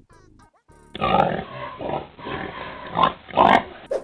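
A pig grunting repeatedly in short, rough pulses, starting about a second in, with muffled, narrow-band audio.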